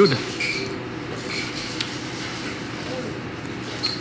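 Steady background murmur of voices and room noise in a restaurant dining room, with a few faint short high tones.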